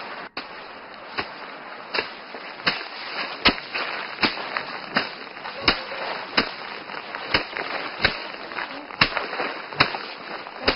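Sheaves of rice being beaten down by hand to knock the grain loose (hand-threshing paddy): a regular run of sharp strikes, about one every three-quarters of a second.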